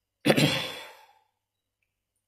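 A man's single heavy sigh. One breathy exhale comes in sharply about a quarter second in and fades away within a second.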